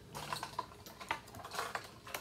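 A few faint, scattered clicks and taps of kitchen utensils and plastic containers being handled on a tabletop.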